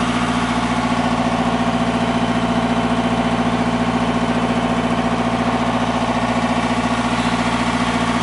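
A river cruiser's inboard diesel engine running steadily as the boat cruises along, a constant hum with a fast, even throb.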